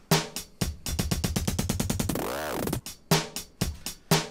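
Teenage Engineering OP-Z playing a sampled drum beat that is being run through its tape-track effects. About a second in, the beat breaks into a fast stutter of rapid repeats, then a pitched sweep that rises and falls. The beat picks up again near the end.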